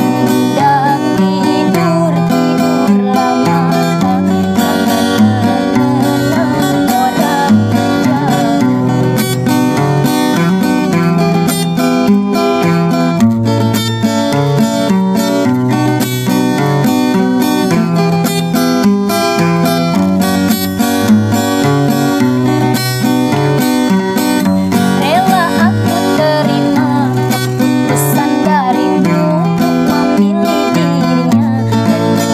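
Acoustic guitar played with a capo, a steady accompaniment of strummed and picked chords. A woman's singing voice is heard over it at the start and briefly again near the end.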